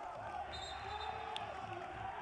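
Faint court sound from a basketball game in a hall: a basketball bouncing on the hardwood under a low murmur of voices.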